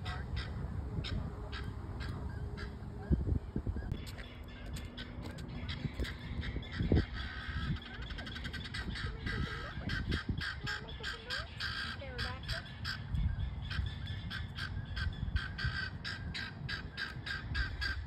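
Guinea fowl calling: a rapid, evenly repeated chatter of harsh calls, over a low rumble of wind on the microphone.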